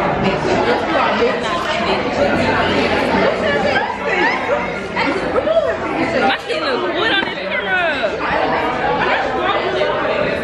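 Many people talking at once, with overlapping voices and no single speaker standing out, in a large, busy room.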